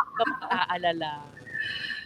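A woman's voice talking and laughing, ending in a short, high, held vocal sound.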